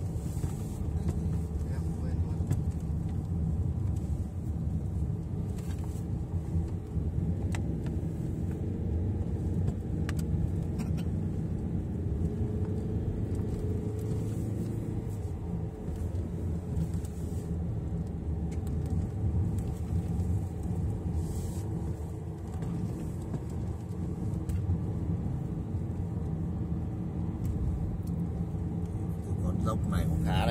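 Road and engine noise inside a moving car's cabin: a steady low rumble while driving a winding mountain road.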